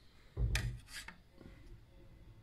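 Handling noise as the metal powder pan of gunpowder is carried over and set onto the lab scale's weighing pan: a short rubbing, scraping burst with a couple of clicks about half a second in, then only faint room noise.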